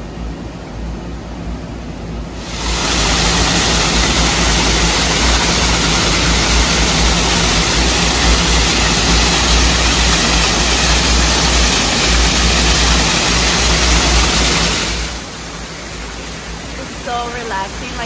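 Small ornamental waterfall spilling down a rock face: a loud, steady rush of falling water that starts suddenly a couple of seconds in and cuts off suddenly near the end.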